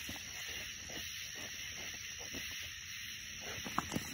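A faint, steady high hiss, with a few soft clicks near the end.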